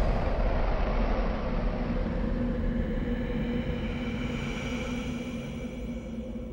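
A low rumbling drone with a few steady held tones that slowly fades out, the tail of a big sound-design hit.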